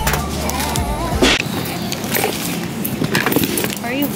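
Background music with a heavy bass that cuts off about a second and a half in. After it come scattered clicks and rustling as items are handled and bagged at a checkout counter.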